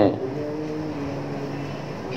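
A steady hum of several held tones, like a motor or amplifier drone, during a pause in the speech.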